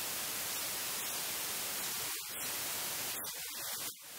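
Steady hiss of static noise across the whole range, with a few brief dropouts about two seconds in and near the end.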